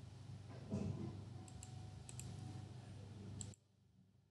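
Computer mouse clicking several times, mostly in quick pairs, over a low room hum, with a thump under a second in. The sound cuts off abruptly about three and a half seconds in.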